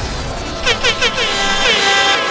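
Dancehall-style air horn sound effect: a hissing whoosh, then from about half a second in a rapid series of short horn blasts, each dipping in pitch.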